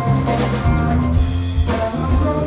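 A live rock/country band playing, with drum kit beats under guitars and sustained notes.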